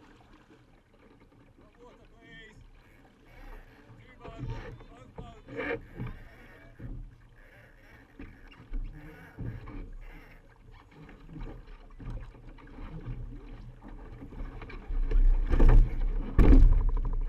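Water slapping and splashing against a Laser sailing dinghy's hull under sail, with scattered short knocks. Near the end a much louder rush of wind and water comes in.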